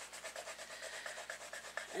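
Colored pencil being stroked back and forth on paper while coloring: a quick, even run of soft scratchy strokes.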